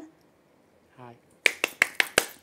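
A rapid run of about five sharp clicks in the last half second, following a short spoken "hi".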